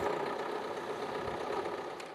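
Peugeot Expert van's engine idling with a steady hum, starting to fade near the end.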